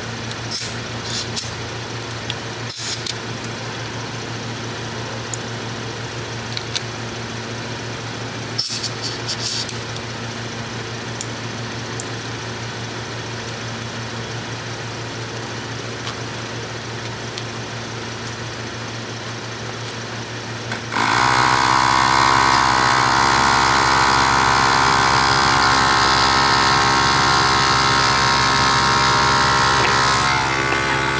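A few handling clicks over a low steady hum, then about 21 seconds in a 12-volt portable tyre-inflator compressor switches on suddenly and runs with a loud, steady buzz, pumping air into a car tyre through its coiled hose.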